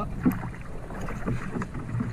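Lake water sloshing and splashing around a man wading waist-deep beside a canoe as he moves to climb back into it.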